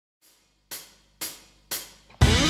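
Drum-track count-in: three cymbal strikes about half a second apart, each ringing and fading.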